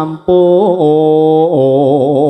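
A male voice sings a slow Javanese vocal line through a sound system, holding long notes. About a second and a half in, the held note steps down in pitch and wavers with vibrato.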